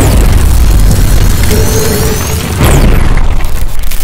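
Cinematic logo-reveal sound effects: a loud, deep boom and rumble, with a second heavy hit a little over two and a half seconds in, over music.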